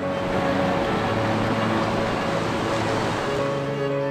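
Rushing white water of a fast mountain river, a steady loud wash of noise, with strings-and-piano music playing on underneath.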